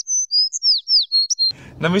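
Cartoon 'dizzy' sound effect of birds tweeting: a quick string of high, thin whistled chirps, several gliding downward, over total silence. It stops about one and a half seconds in, when a man starts speaking.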